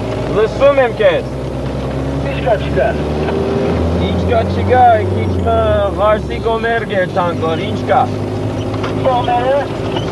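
A vehicle's engine drones steadily, heard from inside the cabin, its low note easing about seven seconds in. Over it, men chant a short call again and again.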